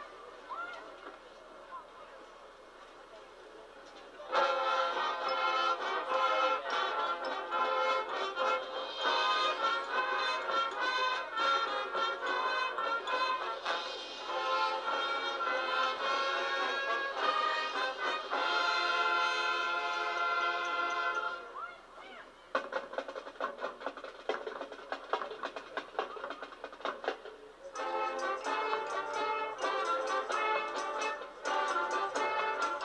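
Marching band playing loud sustained chords after a soft opening. The full band comes in about four seconds in, drops to a softer passage a little past the middle, then comes back loud near the end.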